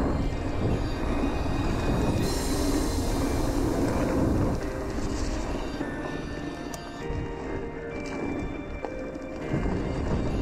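Background music over the steady rolling rumble and rattle of a mountain bike riding fast along a hard-packed dirt trail.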